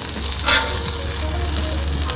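Smashburger patties sizzling on a hot cast iron griddle, with a brief scrape of a metal spatula on the griddle about half a second in as the second patty is lifted off.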